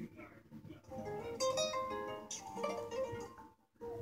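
A recorded song's intro starts playing back: plucked guitar notes come in about a second in, with a short break near the end.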